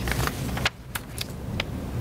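Paper rustling and handling noise near a table microphone, dropping away about two thirds of a second in, followed by a few light clicks.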